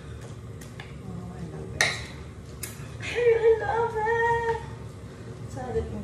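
A wooden spatula stirring noodles in a nonstick pan, with a couple of sharp knocks against the pan in the first half. A woman's voice holds a drawn-out, wavering note for about a second and a half, starting about three seconds in.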